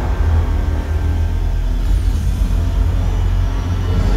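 Loud, deep rumbling bass from a show soundtrack over outdoor loudspeakers, with faint music above it.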